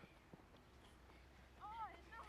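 Near silence, then a faint, high child's voice calling out near the end.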